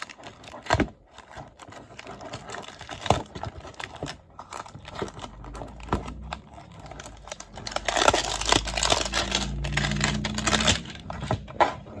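Clear plastic wrapping crinkling and tearing as fingers pick it off a cardboard trading-card box. Irregular crackles and clicks, busiest and loudest from about eight to eleven seconds in.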